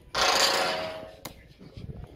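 A man's loud shout lasting about a second and fading out, a herder calling to drive the bulls, followed by a short sharp click.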